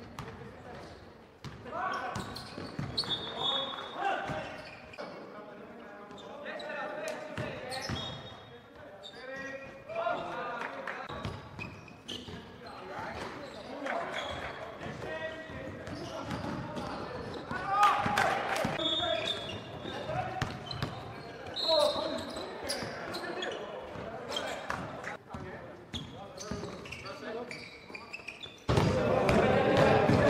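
Live basketball game sound in an indoor gym: balls bouncing on the court and players' indistinct shouts, echoing in the hall. The sound gets louder near the end.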